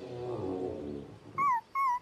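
A falling pitched note fades out in the first second. Then a cartoon puppy gives two short, high whimpers near the end.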